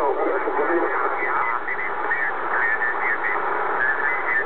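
Amateur radio single-sideband voice signals on the 10-metre band received through a Kenwood TS-690S transceiver: thin, narrow-band voices over a steady hiss of band noise, too weak or jumbled for the words to come through.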